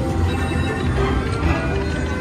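Whales of Cash video slot machine playing its free-spin bonus music and reel-spin sound effects while the reels spin.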